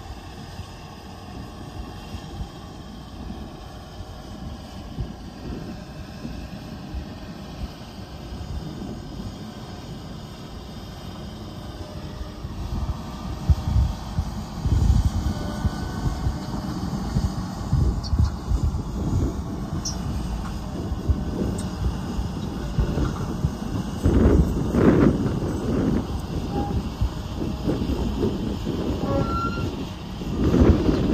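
Case IH Steiger 620 Quadtrac's Cummins 15-litre six-cylinder diesel working under load as it tows a loaded earth scraper, with the rumble of its rubber tracks rolling over dirt. The sound is steady at first and grows louder and rougher from about 12 seconds in, with irregular low surges.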